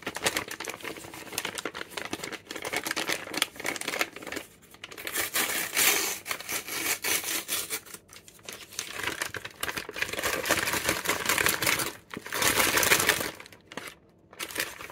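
Plastic bag of Kit Kat Mini Salt Lemon crinkling in irregular bursts as it is handled and torn open.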